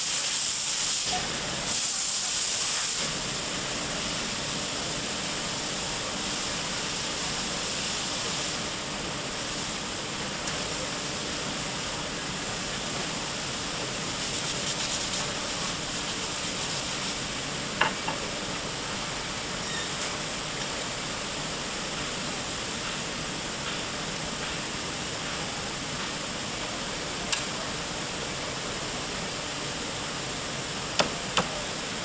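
Steady hiss of a furniture factory workshop, louder for the first three seconds, with a couple of light knocks.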